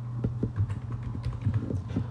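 Computer keyboard keys clicking irregularly as a layer name is typed, over a steady low hum.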